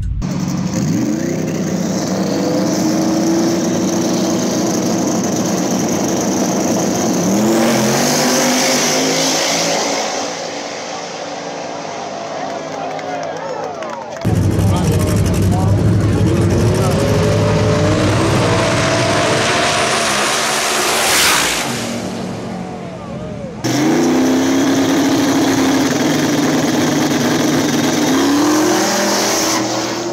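Drag race cars launching and accelerating hard down the strip, engines climbing in pitch and dropping back at each gear change. Several separate passes are heard, each cutting in suddenly.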